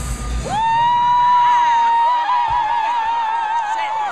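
A singer holding one long, steady high note over dance-pop backing music whose beat has dropped out. About halfway through, the note gains a widening vibrato, and it breaks off just before the end.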